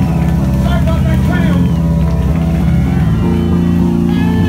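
Live punk rock band playing loud, with the electric bass and guitars holding sustained low notes that shift pitch a little after about three seconds, and wavering higher tones above them.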